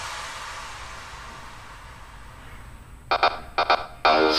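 Electronic dance background music at a break: a fading noise sweep that dies away, then short chords start up again about three seconds in.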